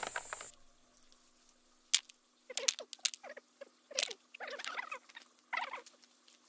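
Walnuts being picked out of a mesh net by gloved hands: scattered sharp clicks of nuts knocking together, with short bouts of rustling from the net, separated by brief pauses.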